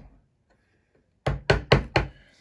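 Mallet striking a small veining chisel cutting into a scrap wooden board: four quick, sharp knocks starting a little over a second in.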